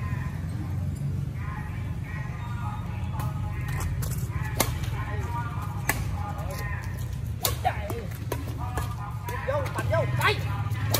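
Badminton rally: rackets striking a shuttlecock with sharp clicks, one every second or so in the second half. Under them are a steady low hum and background voices.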